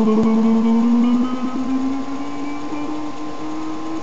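A man's voice holding one long hummed, sung note as a playful sound effect. The note slowly rises in pitch and stops near the end.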